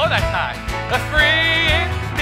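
Live worship band playing an upbeat country-style song: acoustic guitar, drums and keyboard, with held sung notes.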